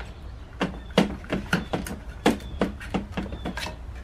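Sharp plastic clicks and knocks, about a dozen at uneven intervals, as a moulded plastic connector is pried and worked loose from the top of a sealed lead-acid battery.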